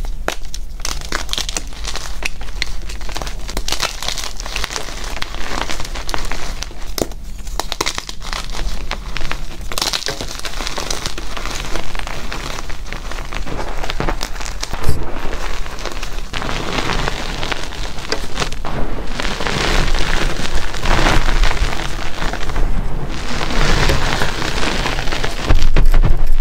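Hands crushing and crumbling block gym chalk into powder in a bowl: dense, continuous crunching and crackling with occasional sharper snaps.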